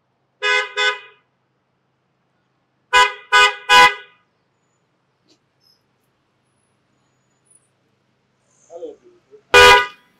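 Lexus SUV's car horn honking: two quick toots, then a pause and three more quick toots in a row. A brief loud sound follows near the end.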